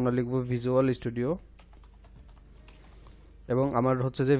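A man speaking, with a pause of about two seconds in the middle. In the pause, faint computer-keyboard typing: a short run of key clicks as a search word is typed.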